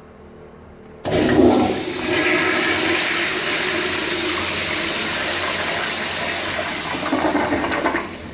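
A vintage Standard Madera commercial toilet bowl flushing from its flush valve: a sudden loud rush of water starts about a second in, swirls steadily through the bowl for about seven seconds and drops away near the end.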